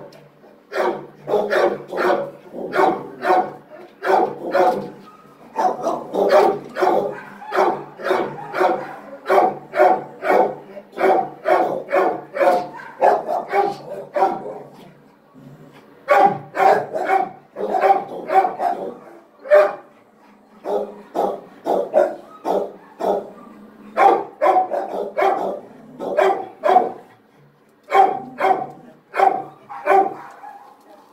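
A dog barking over and over, about two barks a second, with a couple of short pauses.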